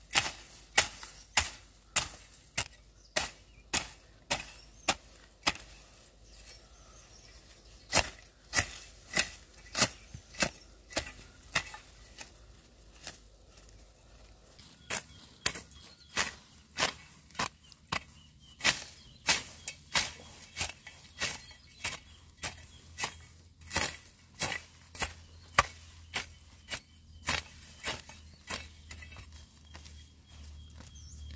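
Short-handled hoe with a bamboo handle chopping into the ground in a steady rhythm of about two sharp strokes a second, with a couple of brief pauses.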